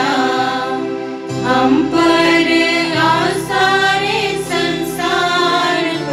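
A devotional hymn: a voice singing slow, long-held notes over a steady instrumental accompaniment.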